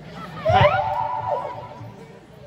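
A horse-like whinny: a sharp rising squeal about half a second in, then a held cry that slowly falls away.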